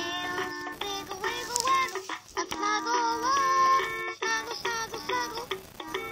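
LeapFrog My Pal Violet plush puppy toy playing a children's song through its small speaker: a simple electronic melody with a synthesized singing voice.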